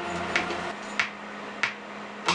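Programmed clap and snare hits from an R&B beat playing over studio monitors, with the rest of the track dropped out. There are three sharp strikes about two-thirds of a second apart over a steady low tone.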